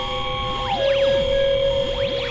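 Experimental synthesizer drone of held tones. About three-quarters of a second in, a two-note chord slides down to merge with the low tone, while quick rising-and-falling pitch sweeps repeat about twice a second.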